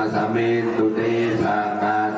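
Buddhist monks chanting together, male voices holding long steady notes with short breaks between phrases.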